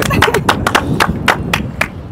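A few people clapping their hands in a quick, uneven run of claps that thins out toward the end.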